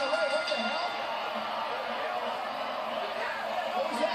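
Wrestling broadcast sound played in the room: a commentator's voice over steady arena crowd noise.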